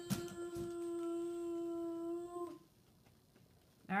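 A child holding one long sung note, steady in pitch, that stops about two and a half seconds in. A couple of light knocks sound near the start.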